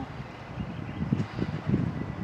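Wind buffeting the microphone in low, uneven gusts over a steady outdoor street background.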